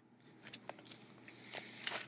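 Tape measure's blade being pulled out of its case by hand: a run of light clicks and short scrapes that grows louder toward the end.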